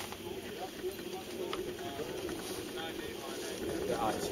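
Faint, scattered talk over a steady low outdoor rumble; no blast yet.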